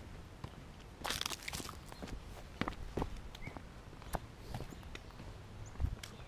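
Footsteps of people walking, with irregular clicks and knocks and a brief rustling crunch about a second in.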